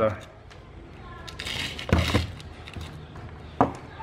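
Handling noises of a digital multimeter and test leads on a concrete floor: a soft rustle swelling to a knock about two seconds in, and a short click near the end, over a faint low hum.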